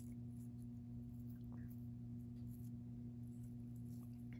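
Faint handling of a rolled paper quilling coil being loosened by hand: a few soft paper ticks and rustles over a steady low hum.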